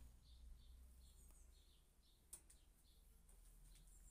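Near silence, with a few faint, short high chirps, like a bird calling, and a faint click a little past halfway.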